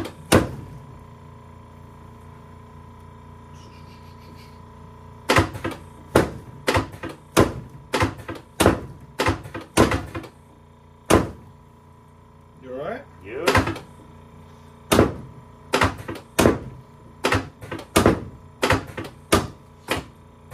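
Quick runs of sharp thuds, about three a second, from a chiropractic drop table's sections dropping under a chiropractor's hand thrusts on a prone patient's lower back. A first run starts about five seconds in, and after a pause with a short vocal sound a second run follows near the end.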